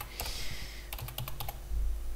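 Computer keyboard being typed on: a quick series of separate key clicks.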